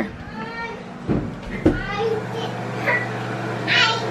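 Young children in a bathroom making high-pitched squeals and babbling calls, with a couple of short knocks partway through. A steady low hum starts a little under two seconds in.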